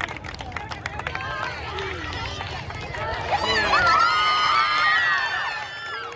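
Crowd of spectators shouting and cheering, with scattered claps at first; about halfway through it swells into many loud overlapping shouts, easing off near the end.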